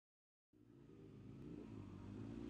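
Silence, then a faint motorcycle engine fading in about a quarter of the way in, running steadily and staying very quiet.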